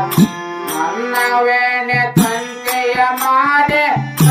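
Harmonium and tabla playing a Kannada devotional bhajan: sustained reed chords under frequent sharp drum strokes.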